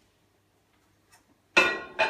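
Near silence, then about a second and a half in a single sharp clunk with a short ringing tail, from the microwave oven as its door is opened and the ceramic mug goes onto the glass turntable.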